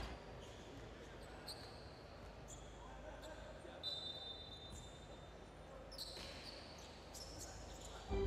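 Faint basketball arena sound: a low hall murmur with a few sneaker squeaks on the hardwood court and an occasional light knock, such as a ball bounce.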